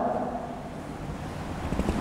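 Steady, even background noise from a running electric standing fan in the room, with a few faint low knocks near the end.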